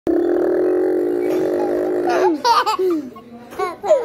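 A voice holds one long steady note for about two seconds, then breaks into laughter in two short bursts.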